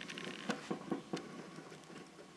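Drip coffee maker brewing, with a faint, irregular run of small clicks and pops that thins out toward the end.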